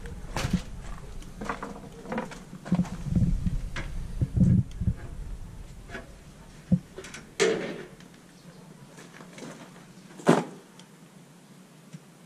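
Scattered knocks and short scrapes as a long spirit level is moved and set against a plastered wall, with low rumbles of shuffling and handling a few seconds in; a single sharp knock about ten seconds in is the loudest sound.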